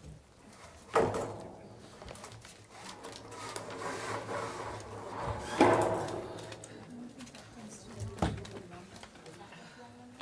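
Faint, indistinct talk among people in a meeting room, with three sudden knocks or bumps: about a second in, a louder one near the middle, and another about eight seconds in.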